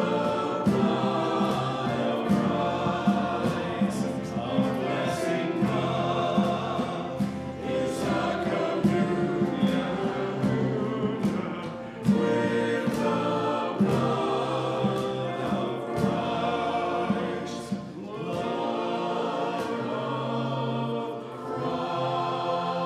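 A small church choir of mixed voices singing a worship song together, accompanied by a small band with guitars and drums.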